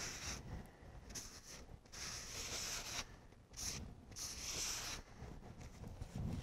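A paper shop towel rubbing over an RC tire's sidewall and wheel in a few soft wiping strokes, wiping off and thinning the excess tire glue so that it dries faster.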